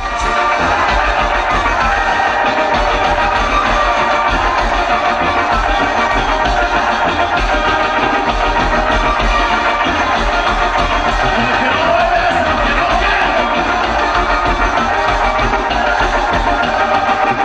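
Loud live band music played over a sound system, with a steady low bass running under it.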